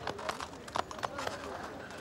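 Horse hooves clip-clopping on a street: irregular sharp knocks over a steady background hum of street noise.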